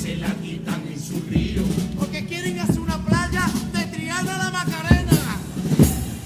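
A Cádiz chirigota, a male carnival chorus, sings a pasodoble together in long held notes over Spanish guitar and drum accompaniment, with a couple of sharp drum hits near the end.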